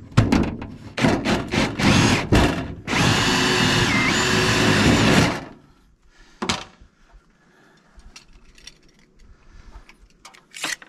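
Ryobi cordless drill running against a metal rain gutter: several short bursts, then one steady run of about two and a half seconds that stops suddenly. A single knock follows a second later.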